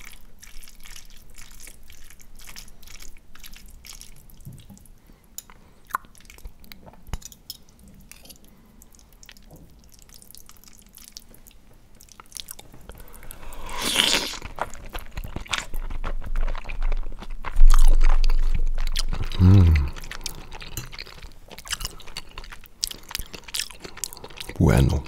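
Metal fork and spoon twirling spaghetti in a ceramic plate, with many small clicks and scrapes. Then close-miked eating of squid ink pasta with shrimp: a loud noisy burst about fourteen seconds in, then chewing, with a short hum of the voice near the end.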